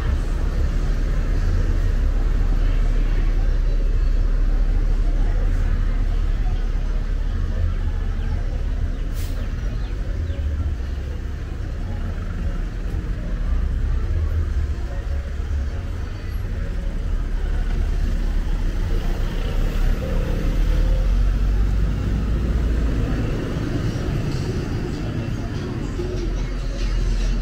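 City street traffic: vehicle engines running with a steady low rumble under an even wash of road noise.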